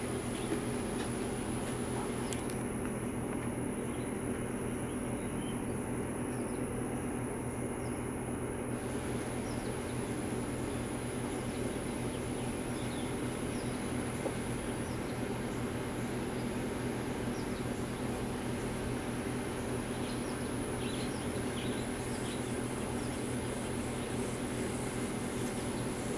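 Steady outdoor drone: a high, thin, unbroken insect chorus over a low steady hum, with a few faint short chirps near the end.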